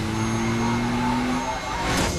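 A motor vehicle's engine running, its pitch rising slowly for about a second and a half, then fading into music with percussion near the end.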